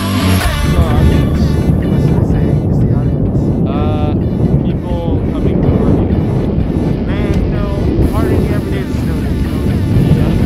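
Outdoor wind rumbling heavily on the camera microphone, over background music, with a few short raised voices calling out.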